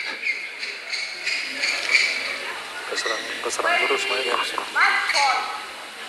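Indistinct voices in a large sports hall, with a few short sharp sounds between them.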